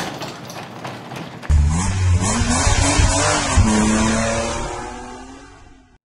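Intro sound effects of a car engine starting and revving over music, with a rushing noise before the engine cuts in about a second and a half in. The engine pitch rises, holds, and fades out near the end.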